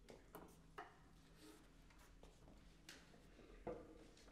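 Near silence: room tone with a few faint, short clicks and rustles.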